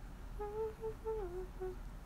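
A young woman humming a short tune with her lips closed: a few held notes that step down in pitch, starting about half a second in and stopping shortly before the end.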